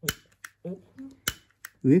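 Piezoelectric igniter taken from a Chakkaman-type lighter, clicked about four times: sharp, short snaps, each one a high-voltage pulse fired into a small glass discharge tube.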